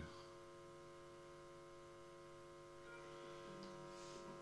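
Near silence with a faint, steady electrical mains hum: a buzz of several even tones held without change.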